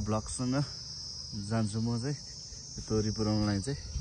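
A steady, high-pitched insect chorus runs throughout, while a man's voice comes in several short phrases that are louder than the insects.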